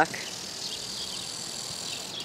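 Steady high-pitched insect chorus, like crickets in summer vegetation.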